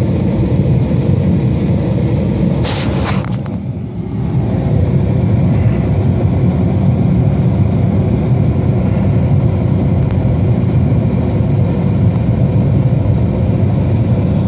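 A stopped Jeep's engine idling with a steady low rumble. About three seconds in there is a brief rustle and knock.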